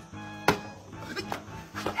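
Background music, with a single sharp knock about half a second in as a flipped plastic water bottle lands on the tabletop. Shouting starts near the end.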